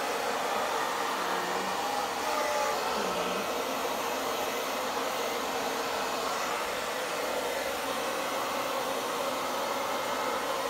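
Handheld hair dryer running steadily, its air stream aimed at wet acrylic paint to blow it across a canvas.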